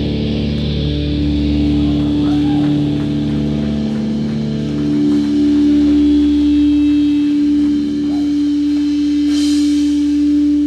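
Amplified electric guitar and bass holding sustained notes that ring out as a steady drone, with a cymbal wash coming in near the end.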